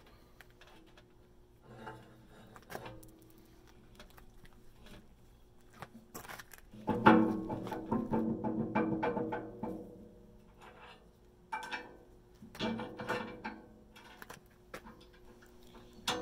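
Background music with low bowed and plucked strings. It swells louder for a few seconds from about the middle.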